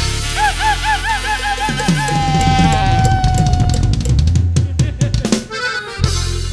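Norteña band music with drum kit and bass: a high line of quick wavering, yelping notes leads into one long held note that sags slightly in pitch, then a snare drum fill near the end.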